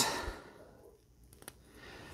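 Faint handling of a plastic action figure: a couple of small sharp plastic clicks a little over a second in, then soft handling noise.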